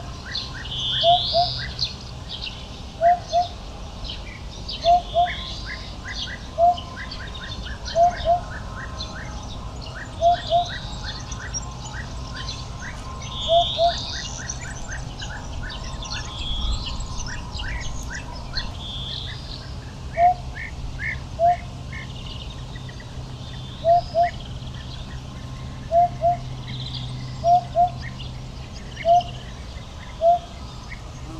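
Eurasian hoopoe singing its low hooting song: short notes, mostly in pairs, repeated every couple of seconds, with a pause in the middle. Other small birds chirp and sing higher behind it.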